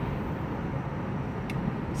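Car cabin noise while driving: a steady low rumble of engine and road with a faint hiss. There is one small click about one and a half seconds in.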